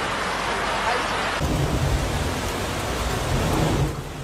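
Floodwater rushing through a street in heavy rain, a steady noise; about a second and a half in it changes to a deeper, rumbling rush.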